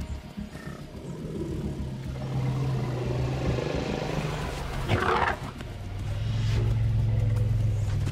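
African elephant vocalising: low, drawn-out rumbling tones with one short, harsh trumpet blast about five seconds in.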